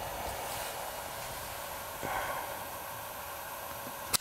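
Steady faint background hiss, with a soft breath close to the microphone about two seconds in.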